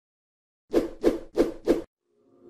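Four short percussive hits in quick succession, about a third of a second apart, each dying away fast: a sound effect for an animated logo intro.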